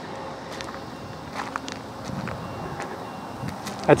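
Footsteps crunching on gravel, a few irregular steps over a low outdoor background.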